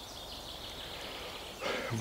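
Faint, steady outdoor background hiss with no distinct events. A man's voice begins just before the end.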